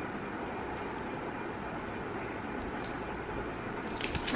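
Steady low background rumble and hiss with no distinct events.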